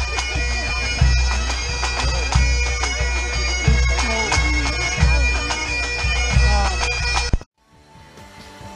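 Pipe band playing outdoors: bagpipes sounding a tune over their steady drones, with a bass drum beating about once every 1.3 seconds. The music cuts off suddenly shortly before the end.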